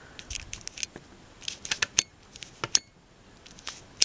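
A handmade paper mini album being handled and shifted into place by hand: a run of sharp, irregular clicks and crinkles of card and embellishments, loudest about two seconds in and again shortly after.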